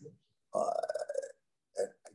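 Speech only: a man's drawn-out hesitation 'uh' lasting under a second, then a short pause and the start of his next word near the end.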